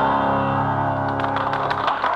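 Piano music: held chords ringing, with sharp clicks joining in the second half.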